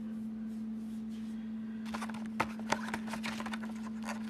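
Plastic blister-pack packaging and paper leaflet being handled, crinkling in a cluster of crackles and clicks about two to three and a half seconds in, over a steady low hum.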